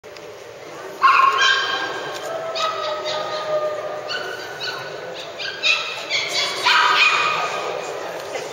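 Shetland sheepdog barking excitedly: a string of about ten short, high-pitched barks and yips, the first loud one about a second in.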